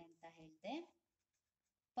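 A woman speaking briefly, her voice trailing off about a second in, followed by dead silence.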